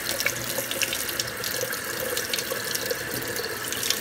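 Tap water running steadily into a stainless steel kitchen sink, splashing around a small silicone sink plunger held at the drain, with a few light clicks.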